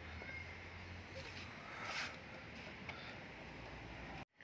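Faint rubbing of a cloth wiped over a wet motorcycle's bodywork, with one brief swish about two seconds in, over a low steady hum.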